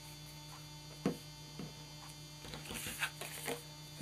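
Steady electrical mains hum, with soft handling sounds of cardstock and a glue stick: a sharp tap about a second in, a lighter one shortly after, and light rustling of card later on.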